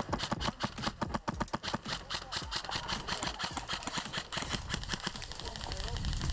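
A rapid, irregular run of sharp clicks and knocks, several a second, thinning out after about four seconds.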